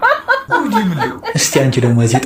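A woman laughing and chuckling while another woman talks.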